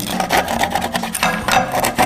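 A steel table knife sawing and scraping at a hard, woody chaga mushroom in quick, repeated rasping strokes. The blade grates over the surface instead of cutting through, because the mushroom is as hard as wood.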